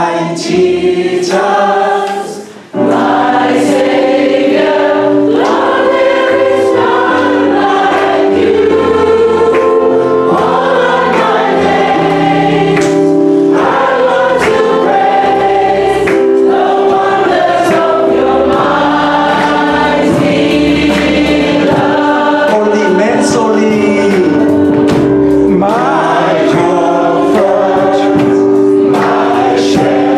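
A small mixed group of men and women singing a Christian song together in harmony, accompanied by violin and keyboard. The music dips briefly about two and a half seconds in, then carries on steadily.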